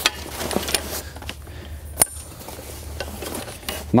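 Metal frame tubes of a layout blind being handled: a few sharp clinks and knocks, the loudest about two seconds in, with rubbing and fabric rustling between them.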